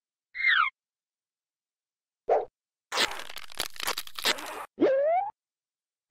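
Cartoon sound effects: a quick falling whistle-like slide, a short pop, nearly two seconds of dense crunchy scuffling noise, then a short rising boing-like slide near the end.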